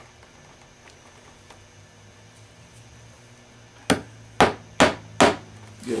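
A hammer taps four times in quick succession, about four seconds in, on a leather saddle, knocking the rear saddle string up tight. The first few seconds hold only faint room noise.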